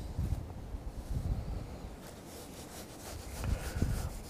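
Low, gusty rumble of wind on the microphone.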